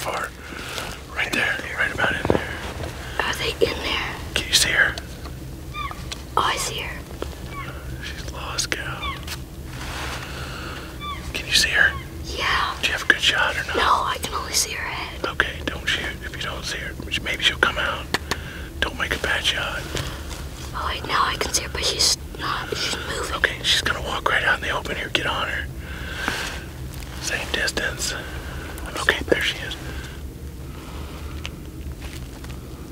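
Hushed whispering in short exchanges, carrying on through the whole stretch over a steady low hum.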